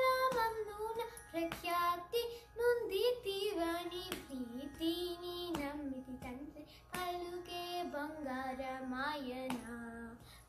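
A young girl singing solo: a long melodic line of held notes that bend and slide in pitch, settling lower in the second half.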